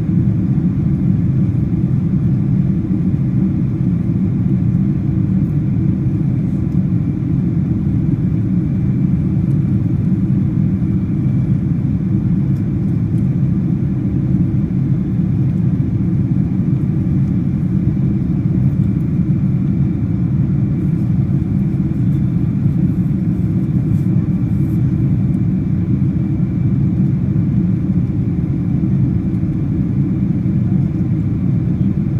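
Steady low rumble of an airliner in flight heard from inside the passenger cabin: jet engine noise and rushing airflow, even and unchanging.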